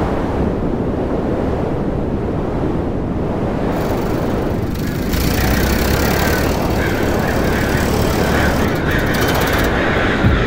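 Wind buffeting the microphone: a steady low rumble that grows a little louder about halfway through.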